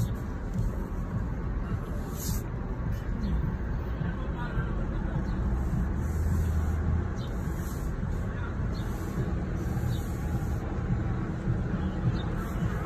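City street traffic heard from inside a car cabin: a steady low rumble of engines and road noise, with indistinct voices mixed in.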